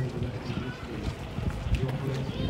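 Footsteps of a person walking on pavement, heard as dull thumps, with the indistinct chatter of a crowd of people walking past.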